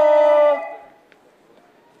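A man's voice holding the last sung note of a chanted sponsor jingle, steady for about half a second, then dying away to faint room sound.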